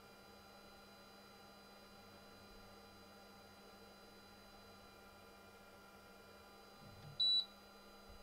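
A single short, high electronic beep from the xTool M1 Ultra laser engraver about seven seconds in, over a faint steady machine hum. The beep marks the end of the framing run on the rotary-mounted tumbler.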